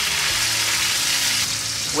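Chopped green onion mixture sizzling steadily in a hot frying pan where buns are toasting.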